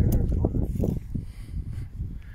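Men's voices talking quietly, dropping away about halfway through, over a steady low rumble.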